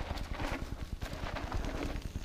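Rapid, low fluttering rumble of wind buffeting the microphone, with faint scattered crunches of a mountain bike's tyres rolling down a loose gravel and rock slope.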